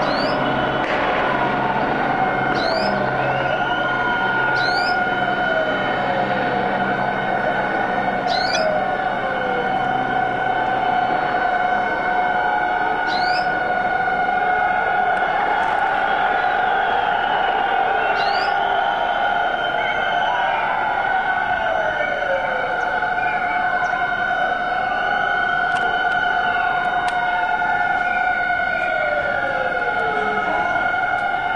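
Sirens wailing steadily, with repeated falling sweeps in pitch. A helicopter's low drone fades out over roughly the first ten seconds.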